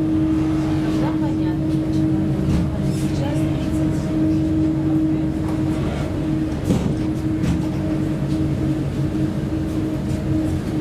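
Steady drone of a ferry's engines with a constant hum, heard from the open deck, with passengers' voices faintly in the background.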